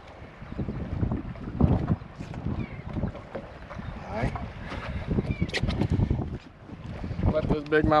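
Wind buffeting the microphone in gusts, with brief bits of voices through it and a voice near the end.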